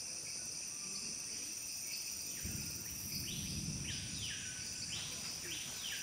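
Rainforest insects droning steadily at a high pitch. In the second half, birds give four calls in two pairs, each sweeping down in pitch. A low rumble runs through the middle.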